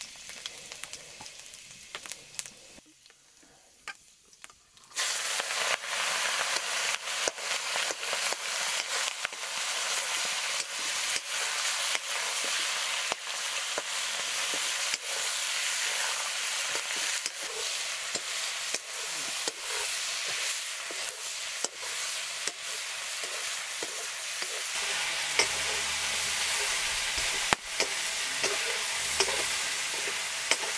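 Food dropped into hot oil in an iron kadai, setting off a sudden loud sizzle about five seconds in, which then carries on as steady frying while a metal spatula stirs and scrapes the pan with small clicks.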